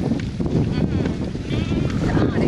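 Sheep and goats in a moving herd bleating, with a quavering bleat near the end, over a steady low rumble.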